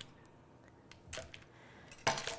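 Quiet room tone with a few faint, short clicks and taps from a kitchen knife and fingers working over cut bars on a cutting board: one at the start, a couple a little over a second in.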